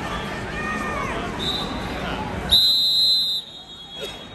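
A referee's whistle blows one sharp, steady blast lasting under a second, about two and a half seconds in, stopping the wrestling. A shorter, fainter toot comes about a second earlier, over crowd chatter and shouting.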